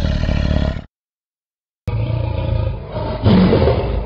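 Tiger roar sound effect. The sound cuts off a little under a second in, leaves about a second of dead silence, then a second roaring sound on a duller track starts suddenly and runs on.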